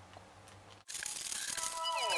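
Quiet room tone, then, after a cut a little under a second in, a crinkly rustle of plastic LEGO parts bags being handled. Near the end, music begins with falling tones.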